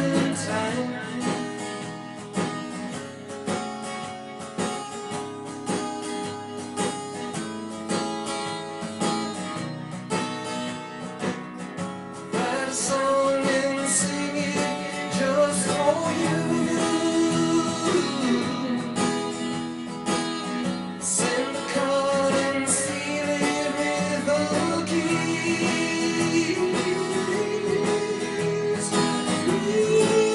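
A man singing a country-rock song to his own strummed acoustic guitar. The performance gets louder about twelve seconds in.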